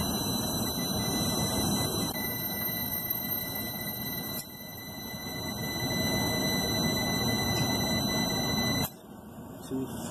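A Southwire SC440 clamp meter's continuity beeper sounds a steady high tone through a rooftop AC unit's condenser fan cycle switch, over a steady rushing noise. About nine seconds in the tone cuts off: falling head pressure has opened the fan cycle switch.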